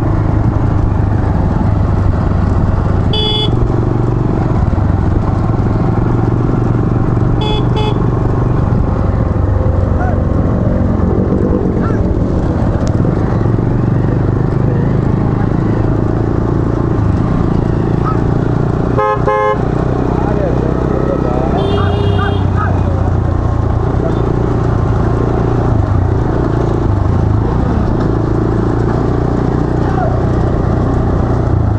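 A pack of motorcycles running close together with a steady engine rumble, punctuated by horn toots: short beeps about 3 and 8 seconds in, a longer honk around 19 seconds, and a warbling tone a few seconds later.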